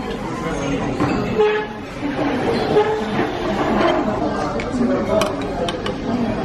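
Indistinct voices of diners chattering, with a few sharp clinks of a metal spoon against dishes near the end.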